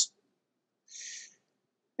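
Silence, broken about a second in by one brief, soft intake of breath.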